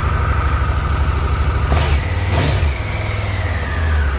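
Triumph Tiger 1200's three-cylinder engine idling just after a cold start. There are a couple of short clicks about two seconds in, then a thin whine that slowly falls in pitch.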